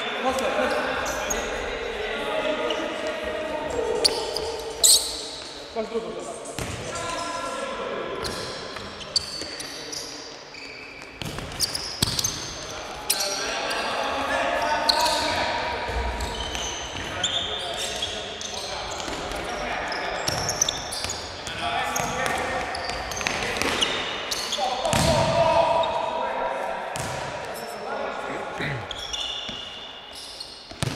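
Indoor futsal play in an echoing sports hall: a ball being kicked and bouncing on the hard floor, with sharp knocks every few seconds, and players calling out to each other.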